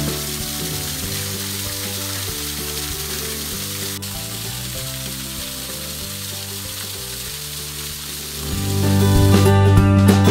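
Steady splashing hiss of a small garden waterfall pouring off a stone ledge into a rocky pool, with soft background music underneath. The music swells back up near the end.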